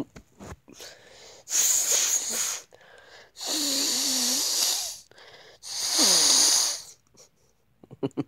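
A young man laughing hard in wheezy, breathless fits: three long, airy bursts of laughter, each a second or more, with short gasps between them.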